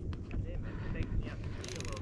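Fishing reel ticking rapidly for a moment near the end while a big striped bass pulls on the line, over low wind and water noise.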